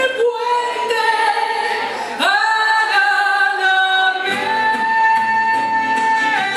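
A woman singing a Peruvian vals live, holding long notes with vibrato. The band drops out for about two seconds while she holds a high note, then comes back in under the next long note.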